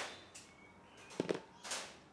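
A few light clicks and taps, about a second in and again near the end, as small cut-off plastic fan-mounting lugs are handled and set down on a cardboard-covered bench.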